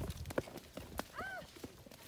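Footsteps on a muddy footpath: a handful of irregular steps, short knocks and squelches.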